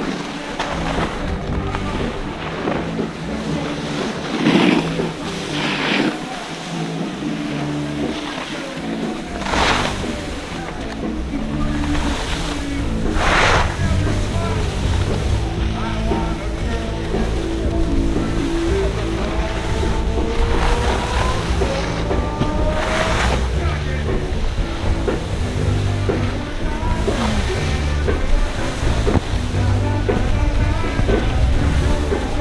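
Skis sliding over soft, slushy snow with a continuous hiss and several sharp scrapes as edges bite in turns, with wind rushing over the camera microphone.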